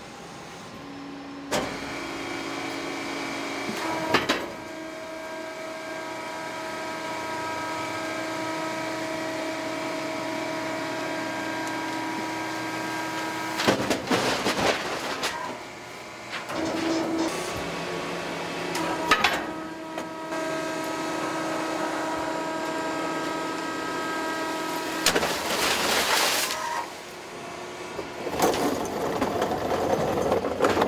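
A cart tipper's powered lift runs with a steady hum as it raises a bin loaded with about 800 pounds of paper and tips it into a stationary compactor. There is a loud clatter about 14 seconds in as the bin tips and dumps. The drive then runs again as the bin comes back down, with another loud rattle near 26 seconds.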